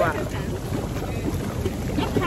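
Hot tub jets churning the water: a steady bubbling noise.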